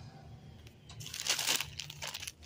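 Plastic packaging of a bag of disposable training pants crinkling as it is handled, in a short burst about a second in.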